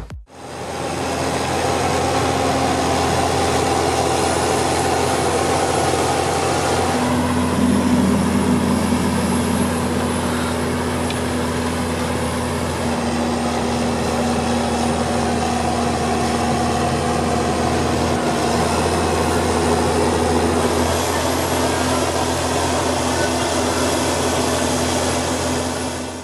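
John Deere tractor's diesel engine working hard under heavy load as it pulls a tillage implement through stubble. A steady, deep engine drone that fades in over the first couple of seconds, with slight shifts in pitch along the way.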